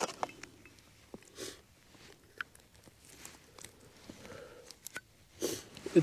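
Quiet handling of a Zippo lighter in gloved hands: scattered small sharp clicks of metal parts and rustling, with a few short soft hisses.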